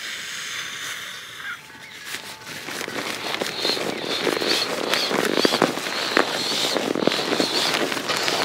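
Breath blown into a nylon pump sack that inflates a sleeping pad. A couple of seconds in, it gives way to a loud, dense crackling rustle of the nylon sack and pad as they are rolled and squeezed to push the air into the mattress.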